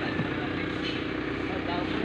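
A motor vehicle engine running steadily, with faint voices in the background.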